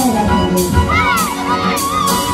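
A crowd of young children shouting and cheering over dance music with a steady beat. A falling pitch comes at the very start, and children's calls rise about a second in.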